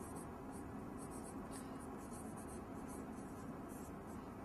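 Faint scratching of a pen writing, in short irregular strokes.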